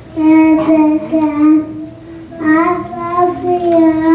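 A young girl singing into a microphone: two phrases of held notes with a short break about two seconds in.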